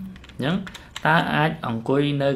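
A man's voice speaking in a steady lecturing manner. A few short keyboard-like clicks fall in the brief pause at the start and again about a second in.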